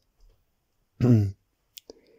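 A pause in a talk: one short hesitation sound from the speaker's voice about a second in, then two small clicks from the speaker's mouth near the end.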